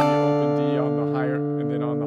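A D minor chord strummed once on a guitar high on the neck, right at the start, then left to ring steadily.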